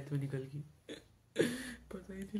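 A boy's voice: a few short voiced sounds, then a loud breathy vocal outburst about one and a half seconds in, sob- or gasp-like rather than words.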